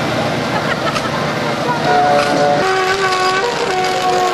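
Street noise and voices, then from about halfway a short tune of held notes, several sounding together and changing pitch in steps, like a horn playing a melody.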